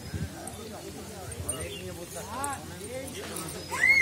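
Indistinct voices of people talking at a distance, faint and intermittent.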